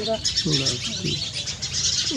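Small birds chirping continuously in quick, repeated high notes, with a few short snatches of voice.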